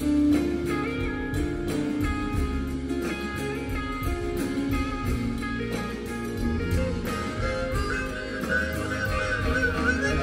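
A live band playing an instrumental break in a slow blues-rock song: guitars over bass and a steady beat. A wavering lead line comes in near the end.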